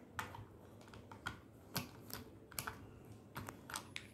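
Hard plastic building bricks and gear pieces clicking and knocking as they are handled and pressed together: a string of faint, irregular light clicks.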